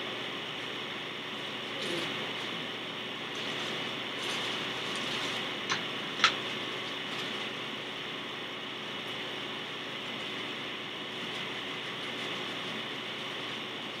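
Steady hiss from a faulty recording, with a plastic mailer bag being handled and two sharp clicks a little past the middle.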